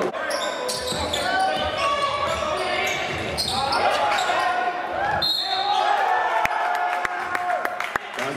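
Basketball game in a gym, echoing in the hall: sneakers squeaking on the hardwood court, the ball bouncing, and players and spectators shouting.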